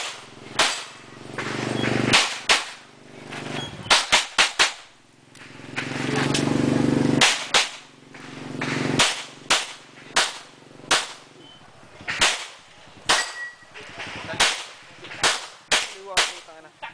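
Handgun shots fired in strings: about twenty sharp reports, some single and some in quick runs of two to four, with pauses of a second or more between groups.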